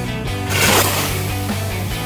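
A Coke bottle rocket charged with liquid butane blasts off about half a second in with a short rushing hiss that fades quickly, over background music.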